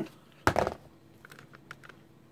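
Handling noise from items being moved about on a table: one short knock about half a second in, then a run of light clicks and ticks.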